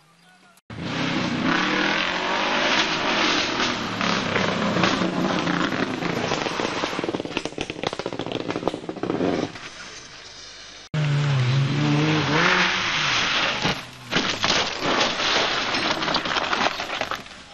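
Rally car engines revving hard on a stage, with pitch rising and falling through gear changes, mixed with road and tyre noise across several cut-together clips. The sound cuts off abruptly about eleven seconds in and starts again loud straight away.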